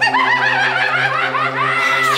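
A man laughing wildly in a quick string of high-pitched laughs, over a steady low drone.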